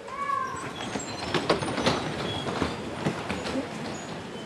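A congregation sitting down. A short squeak rises and falls at the very start, then comes a steady shuffle and rustle with many scattered clicks and knocks of seats and chairs.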